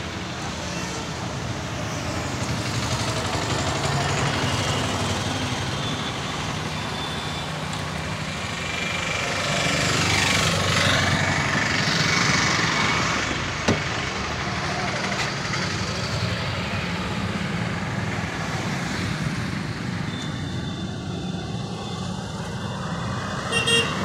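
Street traffic: a steady engine rumble, with a vehicle passing about ten seconds in and a few short horn toots.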